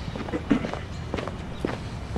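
Footsteps of a man walking in shoes on a concrete sidewalk, at an ordinary walking pace of about two steps a second.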